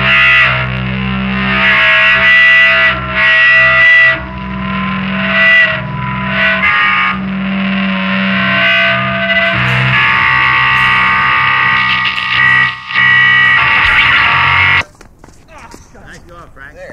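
Noise-punk duo of heavily distorted, effects-laden bass guitar and drums playing loudly, with long held shrill tones over sustained low notes. The music cuts off abruptly near the end as the track finishes.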